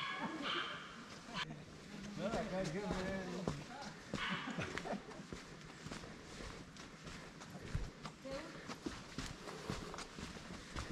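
Footsteps on a dirt and stone trail, with faint voices of people some distance away.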